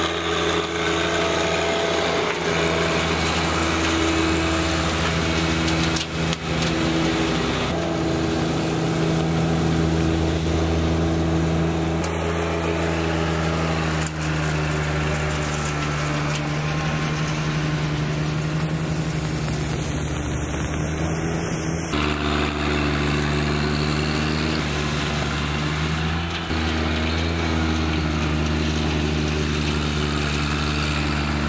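John Deere 1025R compact tractor's three-cylinder diesel engine running steadily under load while it pulls a Sweep-All lawn sweeper across the grass. The engine note changes abruptly several times, at cuts between shots.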